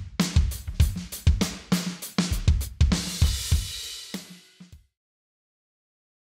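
DWe wireless electronic drum kit playing its "Maple Mahogany Studio" sampled kit: a kick-and-snare groove with hi-hat. A cymbal crash about three seconds in rings for about a second, then two last drum hits, and the sound cuts off suddenly just before five seconds.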